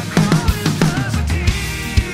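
Drum kit, a TAMA Starclassic Maple set with Meinl Byzance cymbals, played to a steady rock beat of kick drum and snare with cymbals. It is played along to the band's recording of the song, whose pitched parts run over the drums.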